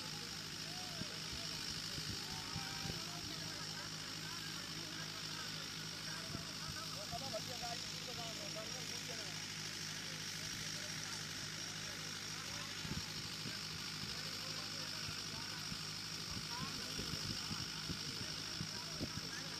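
Outdoor ambience at a sports ground: faint, distant chatter of players over a steady low hum.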